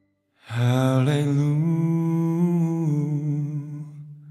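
A man's voice holding one long sung note, sliding up in pitch about a second in, then held with a slight waver and fading out near the end.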